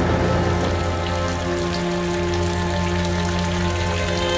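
Background music of sustained, held notes over a deep steady drone, with a steady hiss-like noise beneath it.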